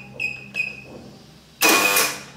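Keypad of a Pratik CP code-and-card access control unit beeping as a code is typed: two short high beeps in quick succession. About a second and a half in comes a louder buzz with a beep over it, the electric door lock being released on the accepted code.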